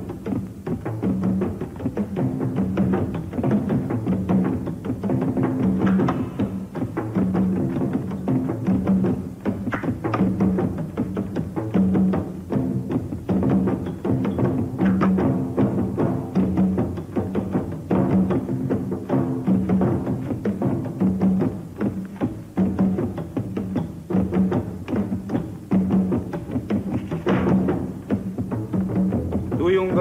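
Music of steady drumming: a deep drum beat about once a second with quicker, lighter strokes in between.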